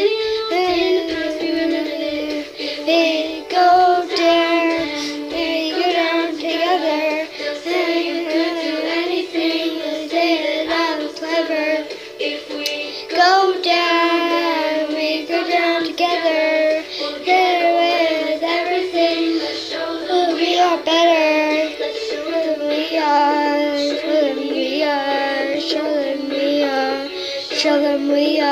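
A young girl singing a melody, with sliding, wavering held notes and only brief breaks for breath.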